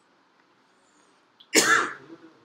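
A single short cough from a person near the microphone, about a second and a half in, after near silence.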